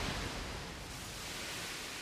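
Dying tail of an anime explosion sound effect: a steady noisy rush slowly fading, as flame meets water and turns to steam.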